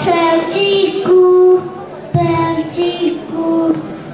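A child singing a song alone, in two short phrases of long held notes.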